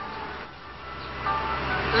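A tour trolley bus's engine running as it drives by, its low rumble growing louder about a second in.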